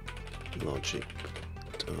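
Typing on a computer keyboard, a few scattered keystrokes, over steady background music.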